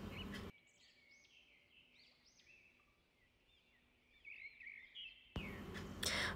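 Near silence: faint room tone, with a few faint high chirps scattered through it.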